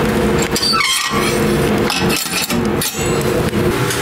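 Metal clinks and knocks from the steel firebox door of a wood-burning sauna stove being handled. Under them runs a steady low hum.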